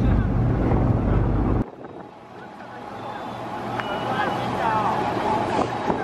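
Wind buffeting the microphone over the low rumble of a ferry's engine. It cuts off suddenly about a second and a half in, giving way to quieter deck noise: a low engine hum that slowly grows louder and people talking in the background.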